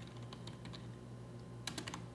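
Faint keystrokes on a computer keyboard as a short word is typed, with a quick run of several key presses near the end.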